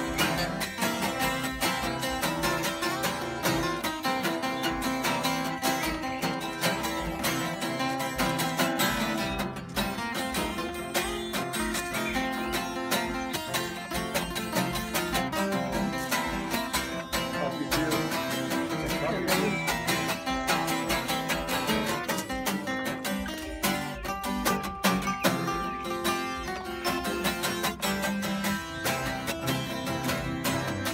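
Two acoustic guitars strumming with a fiddle playing along, an instrumental stretch between sung verses, with one long held note about three-quarters of the way through.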